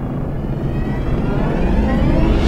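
A low rumbling whoosh that swells steadily louder, an intro sound-effect riser.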